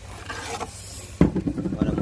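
A metal pot rubbing and scraping on the smooth top of a Hitachi MH-A1 induction cooktop as it is slid off, heard as a short hiss in the first second. It ends in a sudden knock, and a man's voice follows.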